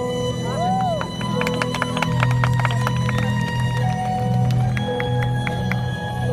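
Dance music played over stage loudspeakers: a steady low drone with held tones, a tone that bends up and down under a second in, and quick runs of sharp percussive hits in the middle and again near the end.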